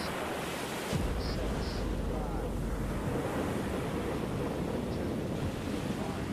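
Saturn V rocket launch: a steady rushing roar, joined by a deep rumble about a second in as the engines build up.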